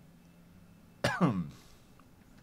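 A man clears his throat once, briefly, about a second in. Otherwise only faint room tone.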